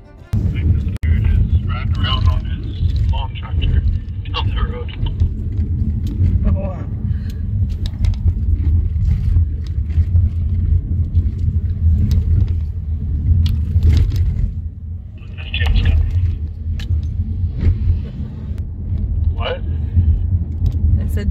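Car driving on a rough, patched road, heard from inside the cabin: a loud, steady low rumble of tyres and engine, with scattered short knocks.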